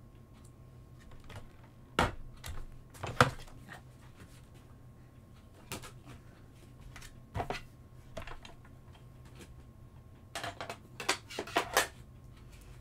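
Clicks and knocks of craft tools being handled: small metal cutting dies clicking as they are picked off a plastic cutting plate, and a die-cut machine being moved off the desk. The knocks are scattered, the loudest a little after three seconds in, with a quick run of clicks near the end.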